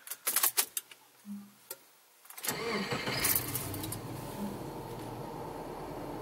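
Ignition key clicks, then about two and a half seconds in a 2008 Subaru Liberty's boxer engine cranks and starts, settling into a steady idle heard from inside the cabin.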